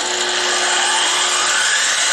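An 1800-watt DeWalt compound miter saw switched on and running at full speed, blade spinning freely without cutting, powered through a 2000 W pure sine wave inverter. The motor's loud, steady whine starts abruptly.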